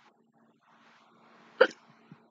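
A person's single short, sharp vocal burst, about one and a half seconds in, over faint background hum.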